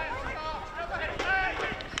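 Field hockey players shouting calls to one another across the pitch, with a couple of sharp clicks of stick on ball.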